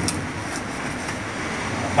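Steady background noise, a low hum under an even hiss, with no distinct knocks or clicks.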